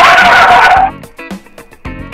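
Background music with a steady beat. A loud, rushing burst of sound with a held tone in it, lasting about a second, breaks in at the start.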